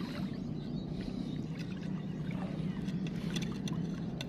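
Shallow seawater sloshing and lapping around a phone held at the surface while wading, with a steady low rumble and scattered small crackling clicks.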